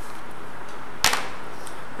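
A single sharp click about halfway through, over a steady background hiss.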